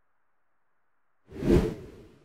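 Silence, then a short whoosh sound effect that swells up and fades away near the end.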